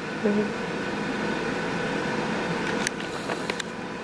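A steady mechanical hum with a few light clicks in the second half.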